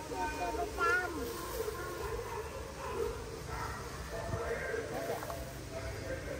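Faint talking in the background, with a short wavering call about a second in.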